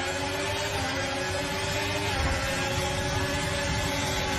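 Formula 1 cars' engines running at high revs, a steady whine of several tones over rushing noise, its pitch holding nearly level.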